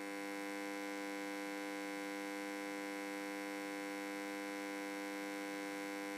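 Steady electrical mains hum: a buzz made of many even tones, held at one unchanging level.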